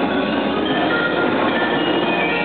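Percussion ensemble playing a dense, steady passage of many overlapping sustained pitches on mallet keyboard instruments such as marimba.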